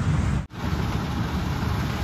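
Combine harvester running steadily in a wheat field while its auger unloads grain into a tractor trolley, a continuous low machine noise. It begins after a brief break about half a second in.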